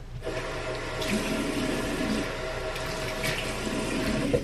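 Water running steadily from a tap into a sink, turned on just after the start.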